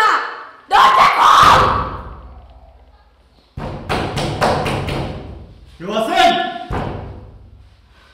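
A man and a woman talking in a heated argument, broken by a few sudden heavy thuds that each fade away slowly.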